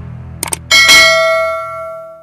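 Subscribe-button sound effect: a quick double mouse click, then a bright bell ding that rings out and fades away.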